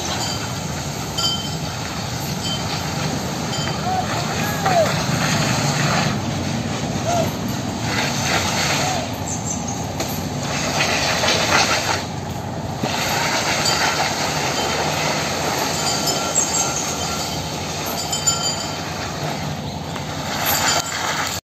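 A whole banana tree being dragged by an elephant over a paved path: a continuous scraping and rustling of trunk and leaves on the ground.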